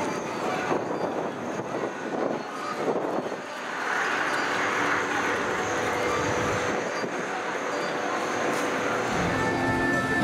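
Outdoor theme-park ambience: passers-by talking in the first few seconds, then a steady rushing noise that swells through the middle and fades again, with park background music coming in near the end.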